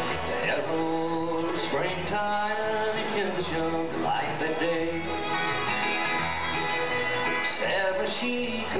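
A bluegrass band playing live: acoustic guitars, mandolin, fiddle and upright bass, with male voices singing.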